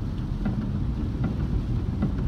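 Steady low rumble of a car cabin while driving on a wet road in the rain, with a few faint ticks.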